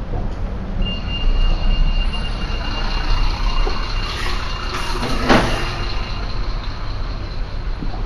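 A large road vehicle passing in street traffic, with a steady high squeal lasting about five seconds and a sharp burst of noise about five seconds in.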